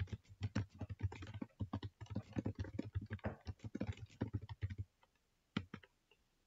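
Fast typing on a computer keyboard: a dense run of keystrokes for about five seconds, then a short pause and two more key presses near the end.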